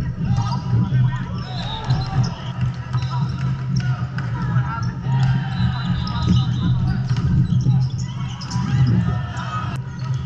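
Busy indoor volleyball hall: volleyballs struck and bouncing on a hardwood floor, sneakers squeaking and players calling out, all echoing in the large hall over a steady low hum.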